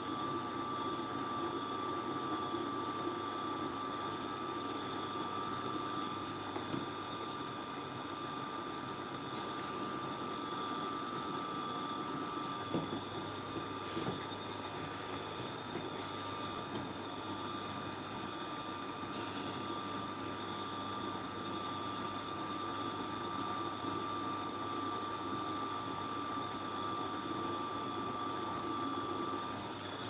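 Tormek sharpening machine running steadily with a constant whine, while a knife blade held in a jig is drawn along the turning coarse grinding stone. A few light clicks come about halfway through.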